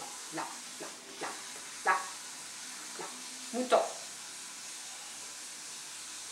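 A few short, separate voice sounds, single syllables spread over the first four seconds, over a steady background hiss.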